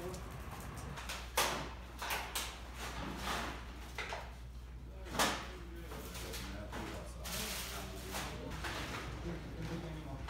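Faint, indistinct voices with several sharp knocks and rattles, over a steady low hum.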